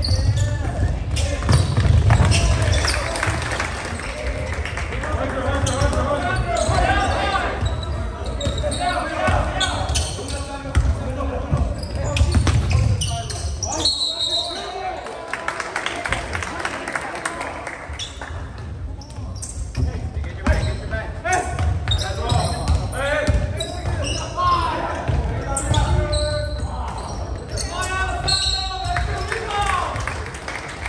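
Basketball being dribbled and bouncing on the hardwood court of a large gymnasium during a game, with voices of players and spectators throughout. A short high whistle blast sounds about halfway through and again near the end, typical of a referee stopping play.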